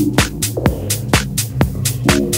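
Techno track with a steady four-on-the-floor kick drum, about two beats a second, off-beat hi-hats between the kicks, and a sustained low bass drone underneath.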